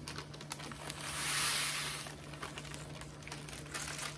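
Parchment paper crinkling as dried lemon zest is tipped off it into a spice grinder, with many small dry ticks and a soft hissing slide about a second in.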